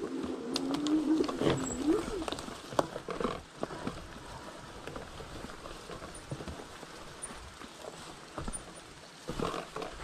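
A fat-tire electric mountain bike rolls over a bumpy dirt trail, with tyre and brush noise and scattered knocks and rattles from the bike. For about the first two seconds a steady low tone sounds, rising in pitch at its end. After that the noise settles to a quieter, even rolling sound.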